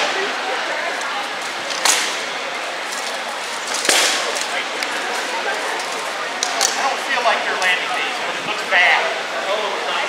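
Rattan swords striking shields and armour in armoured combat: four sharp cracks a few seconds apart, the loudest about four seconds in, over crowd chatter.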